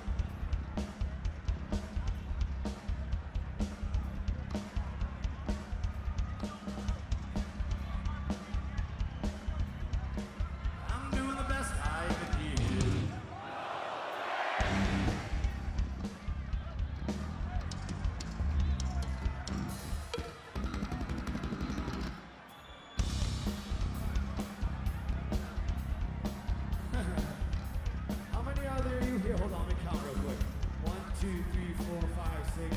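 Live hard rock band playing at full volume with pounding drums, with sung or shouted vocals over it. The low end drops out briefly about thirteen seconds in, and the band cuts back for about a second near twenty-two seconds.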